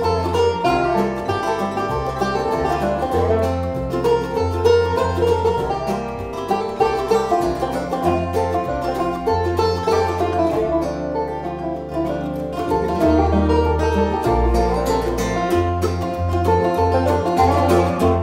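Acoustic bluegrass string band playing: banjo, mandolin, dobro and acoustic guitar picking over an upright bass.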